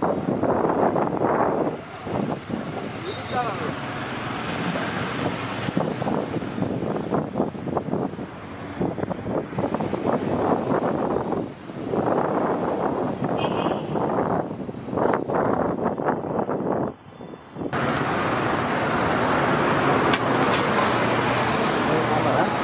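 Street traffic noise with people talking, and a few short clinks of steel ladles and serving vessels. About 18 s in, the sound settles into a steadier rush of traffic.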